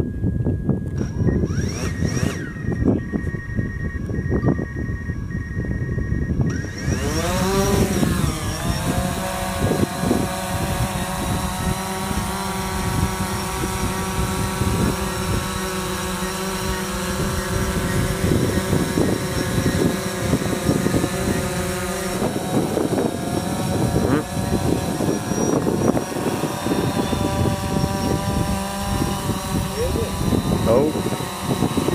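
DJI Phantom 4 Pro quadcopter's motors and propellers spinning up with a rising whine about seven seconds in, then a steady many-toned propeller buzz as it lifts off and hovers. The pitch shifts in the last third as it manoeuvres. A low rumbling noise lies underneath throughout.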